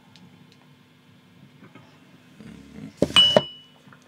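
A ceramic coffee mug clinking against a hard surface about three seconds in: two sharp knocks a third of a second apart, with a brief high ring after them.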